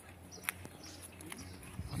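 Quiet open-air background with a faint steady hum, broken by a sharp click about half a second in and a softer click later; a voice starts at the very end.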